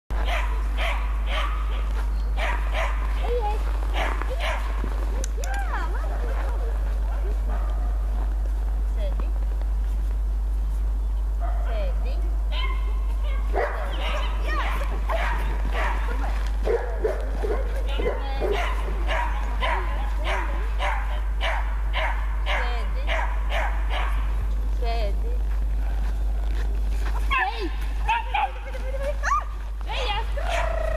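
Three-month-old border collie puppy barking and yipping again and again in short, pitch-bending calls, over a steady low rumble.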